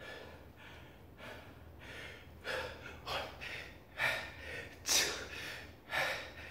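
A man breathing hard during push-ups: short, forceful breaths about one a second, faint at first and louder from about halfway through, the strongest near five seconds in.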